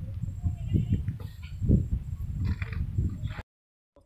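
Wind buffeting the microphone in an uneven low rumble, with faint voices. The sound cuts out suddenly for about half a second near the end.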